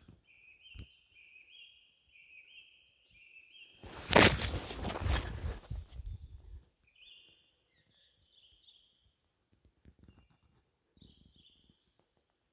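A small songbird singing a repeated two-note whistled phrase, five or six times in quick succession, with more short phrases later. A loud, noisy rush lasting about two seconds breaks in near the middle.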